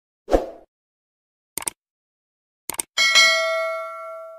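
Subscribe-button animation sound effects: a short soft thump, then two quick mouse-click sounds about a second apart, then a bright notification-bell ding about three seconds in that rings out and fades over more than a second.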